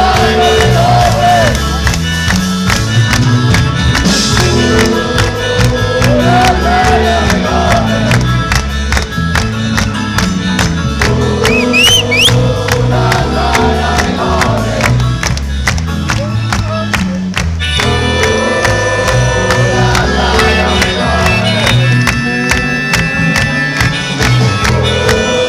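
A rock band playing live with a male singer over electric guitars, keyboards and drums, recorded loudly from within the audience. A short rising whistle cuts through about halfway.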